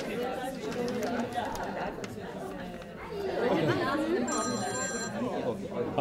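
Overlapping chatter of several people talking in a room. A little past four seconds in, a brief high ringing tone sounds over the talk for under a second.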